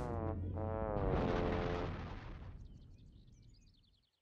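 Cartoon sound effects of a big character toppling over like a felled tree: a drawn-out falling tone, then a crash about a second in that dies away over the next two seconds. Faint birds twitter near the end.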